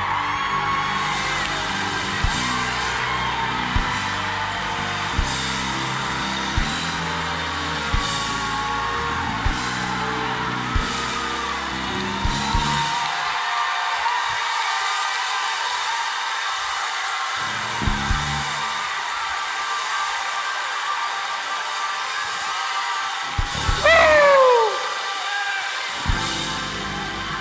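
Church band playing under a pause in the sermon: sustained keyboard chords with a slow beat of drum-kit hits and cymbal strikes. The low chords thin out about halfway through. Near the end there is a loud falling cry.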